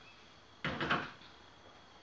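A short double clatter of kitchenware, about half a second in, as the crepe frying pan is handled on its way back to the stove.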